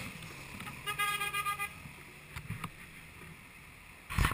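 A horn sounds once, a steady pitched toot lasting about a second, followed by a few light clicks.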